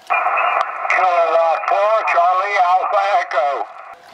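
A distant amateur station's voice coming through the speaker of a Yaesu HF transceiver on 20-metre single sideband: narrow, tinny speech over a steady hiss. It is a station answering a QRZ call with its callsign.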